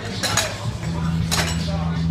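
Spray paint can giving three short, sharp metallic clinks, two close together early and one about a second later: the mixing ball knocking inside the can.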